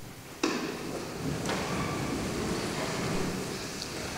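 A congregation and clergy getting to their feet in a church: a steady shuffle and rustle of clothing, feet and pews that sets in suddenly about half a second in, with a couple of light knocks.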